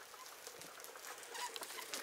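Faint bird chirps, a couple of short calls about one and a half seconds in, over quiet background hiss.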